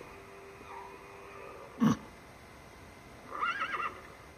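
A single heavy thump about two seconds in, then a short, wavering whinny of the winged horse near the end.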